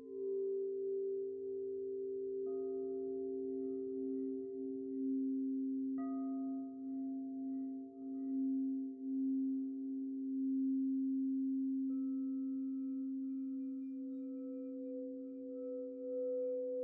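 Several singing bowls ringing together in steady overlapping tones that waver slowly in loudness. A fresh, higher tone is struck in about two and a half, six and twelve seconds in.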